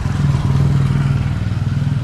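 A motor vehicle engine running steadily, a low hum that is strongest through the first second or so and eases slightly near the end.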